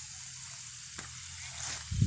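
Steady hiss with a low rumble from a phone handled while it is carried through plants, with a single click about a second in and a short brushing rustle near the end.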